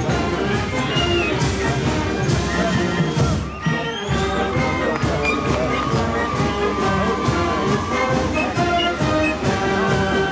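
Live brass band music, an upbeat tune over a steady drum beat of about three strokes a second, with a short break about three and a half seconds in.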